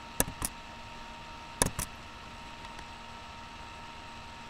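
Computer mouse clicked twice in quick pairs, two double clicks about a second and a half apart, over a faint steady electrical whine and hiss.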